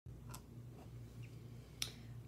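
Two small sharp clicks, a faint one just after the start and a louder one near the end, over a steady low hum.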